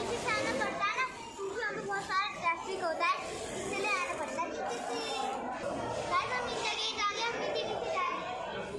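A young girl talking in a high voice.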